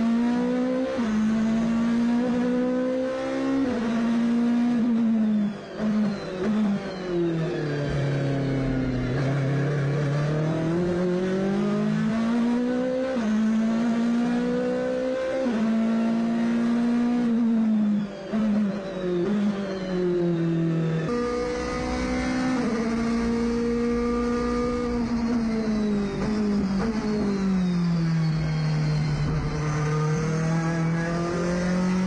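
Race car engine heard from inside the cockpit, revving up and down as the driver works through the gears with a sequential shifter. The pitch climbs, breaks at each shift, and falls away under braking, with brief drops in loudness about 6 and 18 seconds in.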